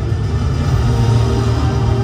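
Dramatic film soundtrack music, a deep steady bass drone under sustained tones, played over the speakers of an immersive projection-room film.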